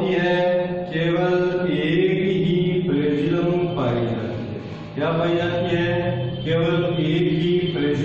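A man's voice in a chant-like, drawn-out delivery: a string of long held syllables, each about a second, with short breaks between them.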